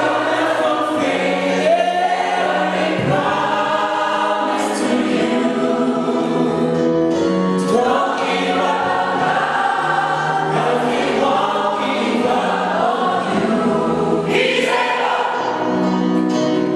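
Mixed gospel choir singing in full harmony with electric keyboard accompaniment, holding long sustained chords at a steady level.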